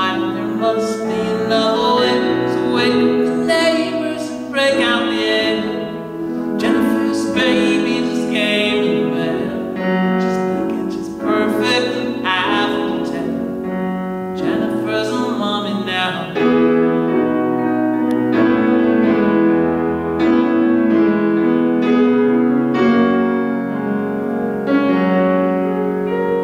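A man singing a song while playing a grand piano.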